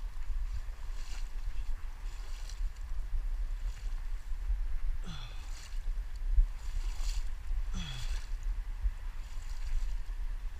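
Wind rumbling on the microphone, with repeated swishes of water and wet grass as someone wades through a flooded, weedy pond edge pushing a pole through the vegetation. Two short squeaky notes slide downward in pitch, about five and eight seconds in.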